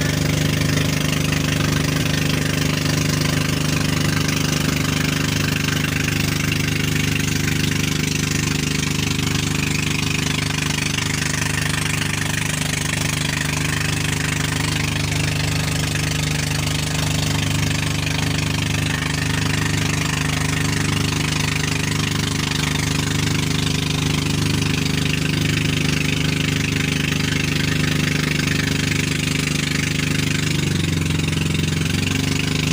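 Engine of a motorized outrigger boat running at a steady, even speed, with a rush of water along the hull and outrigger float.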